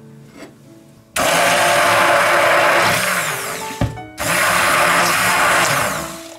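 Hand-held immersion blender whisking raw eggs in a bowl, running in two loud bursts of about two and a half and two seconds, with a sharp knock between them.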